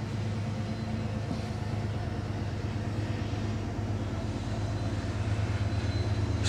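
A steady low hum with a faint even background noise, unchanging throughout.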